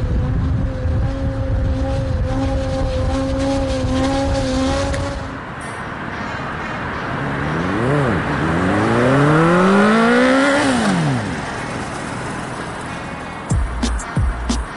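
Suzuki GSX-R 750 inline-four sport bike engine, first held at steady revs, then revving up hard twice as it accelerates. Its pitch drops sharply as it passes by. Music starts near the end.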